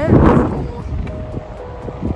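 Wind buffeting a phone's microphone while it is carried at a hurried walk: a loud rumbling rush in the first half second that then eases. Faint background music holds a soft note in the second half.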